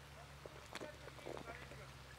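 Faint gulping as a man drinks mineral water from a glass bottle: a few soft swallows and small clicks over a low steady hum.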